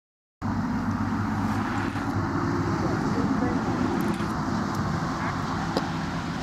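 Steady outdoor background rumble with faint, indistinct voices, starting abruptly about half a second in.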